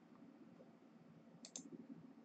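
Near silence with a low steady hum, broken by a quick double click of a computer mouse button about one and a half seconds in.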